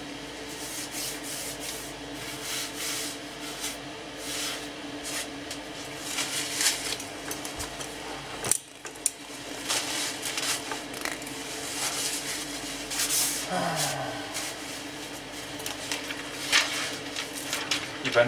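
Intermittent rustling and light handling knocks as paper veneer and a speaker cabinet are handled on a workbench, over a steady low electrical hum. A single sharp click comes about halfway through.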